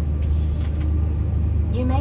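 Airbus A330 cabin noise: a steady low hum heard from inside the passenger cabin. The safety video's narration starts near the end.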